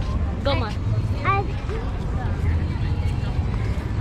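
Voices of people walking on a busy promenade, with two short high-pitched calls about half a second and a second and a quarter in, over a steady low rumble.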